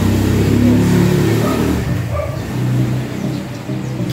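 A motor vehicle's engine running as a low rumble, easing off about two seconds in and swelling again briefly, over background music.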